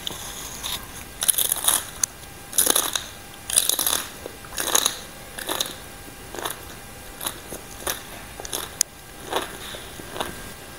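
Close-up crunchy chewing of spicy green papaya salad and raw vegetables: crisp crunches about once a second, loudest in the first half, then lighter chews.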